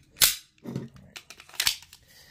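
Metallic clacks and clicks from an unloaded Mossberg MC2C compact pistol being handled. A sharp snap of its action comes about a quarter second in, a few lighter clicks follow, and another sharp snap comes near the end.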